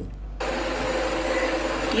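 A steady rushing background noise with a low hum, starting abruptly about half a second in and holding even.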